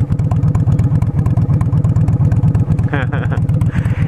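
Honda Shadow VLX motorcycle's V-twin engine idling steadily, an even low pulsing beat. A short burst of laughter comes near the end.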